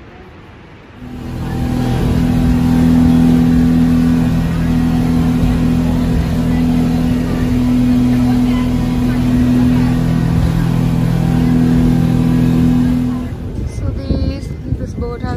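Speedboat engine running steadily at speed, a loud, even drone that starts abruptly about a second in and drops away shortly before the end.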